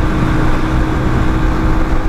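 Single-cylinder engine of a Hero XPulse with a 230 cc big-bore kit, running at steady highway cruising speed in top gear. There is a steady drone under a dense low rush of wind on the microphone.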